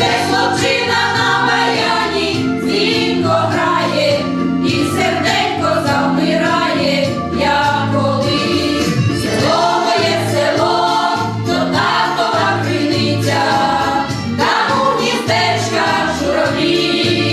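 Women's folk choir singing a Ukrainian song in several voices over a low, steady instrumental accompaniment.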